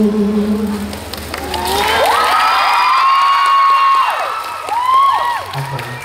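A held sung note ends about a second in. An audience then breaks into high-pitched screaming and cheering, many voices at once, with a second burst near the end before it fades.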